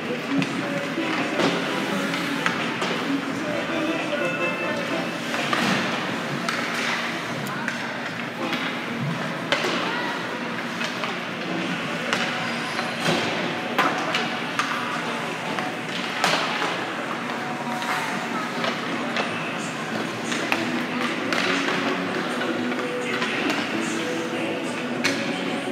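Ice hockey warm-up in a rink: frequent sharp knocks of pucks off sticks and the boards over music playing in the arena, with indistinct voices.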